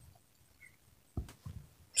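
Faint handling noise from hands working and gathering stretchy fabric: a couple of soft short knocks a little over a second in, otherwise quiet.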